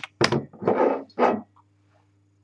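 Three short, loud, noisy handling bursts close to the microphone as a wine glass is picked up and moved, with a few light knocks; after about a second and a half only a low electrical hum remains.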